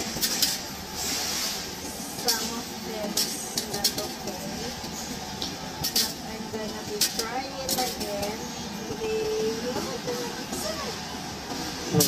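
Loose coins clinking against the perforated metal tray of a Coinstar coin-counting kiosk as they are pushed by hand into the machine, in many quick irregular clinks over the steady hum of the machine running.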